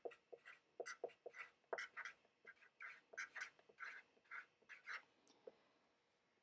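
Sharpie felt-tip marker squeaking on paper as words are written: a faint string of short squeaks, about four a second, one per pen stroke.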